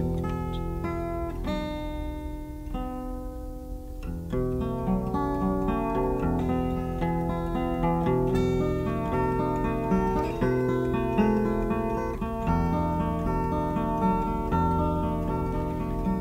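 Acoustic guitar playing a picked instrumental passage of a folk song: a steady run of plucked notes with an occasional strummed chord.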